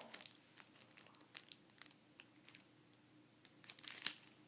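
Faint, scattered crinkles and rustles of plastic packaging being handled, with a quieter stretch in the middle and a few more rustles near the end.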